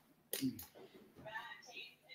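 Faint voices in the background, with a short click and a brief vocal sound about a third of a second in.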